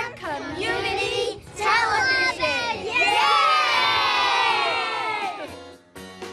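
A group of young children shouting together in a few short bursts, then one long cheer from about three seconds in that trails off near the end.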